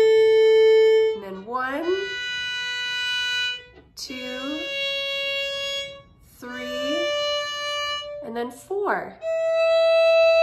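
Solo violin playing a slow stepwise scale up the A string: open A, then first, second, third and fourth fingers (A, B, C sharp, D, E), each note held for about one and a half to two seconds. A short spoken word falls between the notes.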